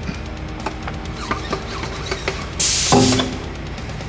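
Background music with guitar and drums. About two and a half seconds in there is a brief loud burst of hiss, followed by a short pitched sound.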